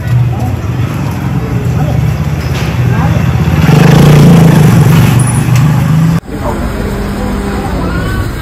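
Harley-Davidson X440 single-cylinder engine running, with voices over it. About halfway through it gets louder and higher for a couple of seconds, then drops back.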